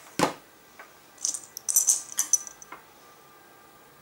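A single knock, then about a second and a half of small, light clicks and rattles, as dry pasta shapes are handled for gluing onto a hot-glued ping-pong ball.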